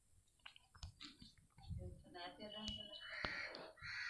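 Faint, low voice murmuring in a small room, preceded by a few light clicks in the first second or so.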